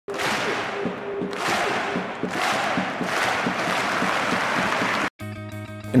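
Intro jingle: music mixed with a stadium crowd cheering and chanting in swells, cut off abruptly about five seconds in. A quieter music bed of held notes follows.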